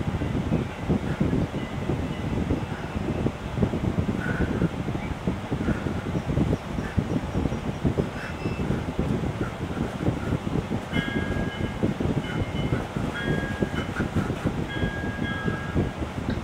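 Steady low rumbling noise, with a few short high tones in the last few seconds.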